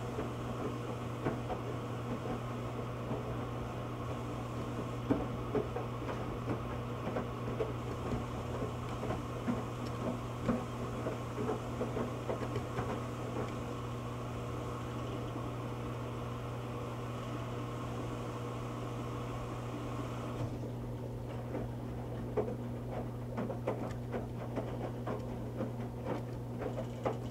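Electrolux front-load washer tumbling a wet moving blanket in its wash: a steady motor hum with water sloshing and small splashes and knocks throughout. A higher steady hiss and tone in the machine's sound drop out about twenty seconds in, leaving the hum and the splashing.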